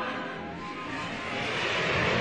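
Dark-ride show soundtrack: a steady vehicle-like noise with music under it, swelling louder near the end.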